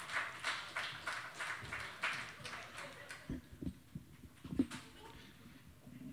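Scattered clapping from a small audience that fades out over the first few seconds. Then a few low thumps from a microphone being handled on its stand.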